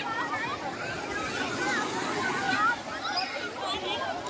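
Indistinct chatter of many people talking at once, a crowd of beachgoers, over a steady background hiss of outdoor noise.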